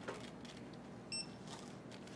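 A single short, high electronic beep from a store checkout register about a second in, the kind given as an item or card is scanned. A light click comes just before it, over quiet store background.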